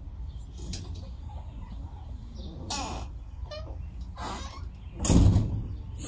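A bird giving a few short, harsh calls over a steady low wind rumble on the microphone, with a louder half-second rush of noise about five seconds in.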